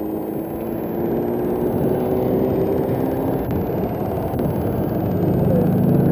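Road traffic passing on a multi-lane boulevard: a steady rush of engines and tyres, growing louder near the end as a vehicle comes close.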